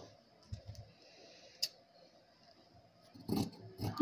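Faint taps and clicks of sewing tools and fabric being handled on a tabletop, with one sharper click about a second and a half in and a louder rustling shuffle near the end.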